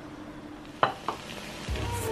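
Quiet kitchen background with two short sharp clicks about a second in, then background music coming in near the end.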